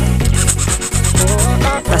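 Background music with a heavy bass line and a row of quick high hissing beats in the first second.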